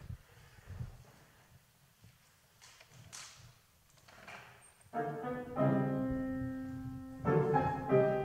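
A pause with a few faint noises, then a grand piano enters about five seconds in with sustained chords, a fresh chord struck about a second later and again near the end.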